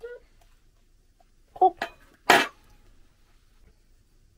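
A woman says a short "oh", then gives one sharp cough.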